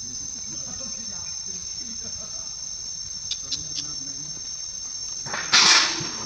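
Insects drone steadily in the forest, a high, even buzz. A few faint ticks come a little past halfway. Near the end a loud person's voice breaks in briefly.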